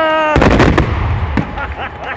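A heavy firework salute bang about a third of a second in, its boom dying away over about a second, with scattered sharp reports. Spectators shout and call out over it.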